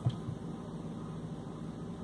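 Steady low background hum and hiss, like a fan or air conditioner running, with one brief click at the very start.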